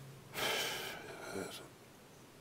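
A man drawing an audible breath in through the mouth, about half a second long, as he pauses between phrases.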